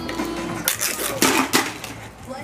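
Thin plastic packaging crinkling and crackling as fingers pull open a toy capsule's wrapping, with a dense run of crackles in the middle.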